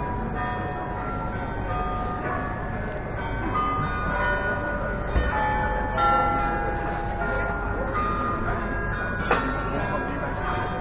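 Church tower bells ringing a run of notes at different pitches, each note ringing on and overlapping the next, over steady background noise. A brief sharp knock comes near the end.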